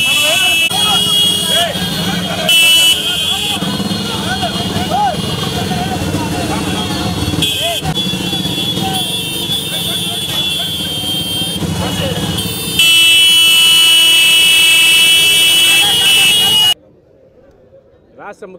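A mass of motorcycles riding together, engines running, with horns honking on and off and men shouting over them. In the last few seconds comes one long, loud horn blast, which cuts off suddenly.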